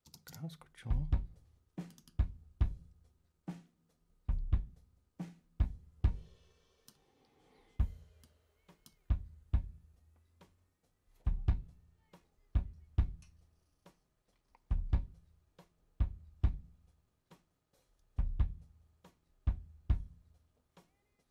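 Recorded kick drum playing back from a multitrack mix: heavy low thumps in a loose rock beat, each with a sharp attack and a low ring afterwards, with a few lighter drum hits and a brief cymbal wash about six seconds in. The kick's ring is long, which the engineer finds too long and sets out to shorten.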